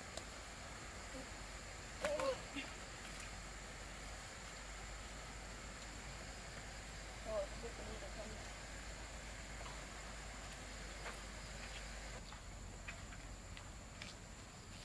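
Quiet outdoor background with a faint steady high thin tone, broken by two short vocal sounds from a person, about two seconds in and again past seven seconds.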